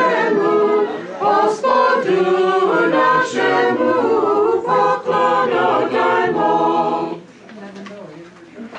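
Small mixed choir of men's and women's voices singing an Orthodox Christmas carol a cappella in harmony. The singing ends about seven seconds in, leaving quieter room sound.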